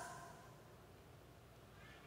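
Near silence: the last of an amplified voice dies away in the hall's echo in the first half second, leaving faint room tone.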